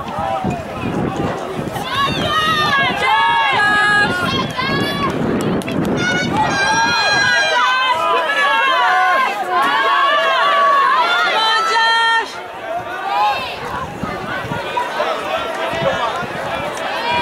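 Several spectators yelling and cheering on distance runners as they pass, high voices overlapping one another with no clear words. The shouting eases for a moment about twelve seconds in, then picks up again near the end.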